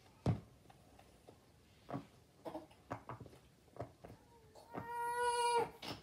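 Silicone pop-it fidget toy being pressed, a handful of sharp single pops spread over several seconds. Near the end a loud, steady high-pitched cry-like tone lasts just under a second.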